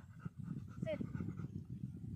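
Siberian husky panting after running, with a woman's voice giving a short "sit" command about a second in.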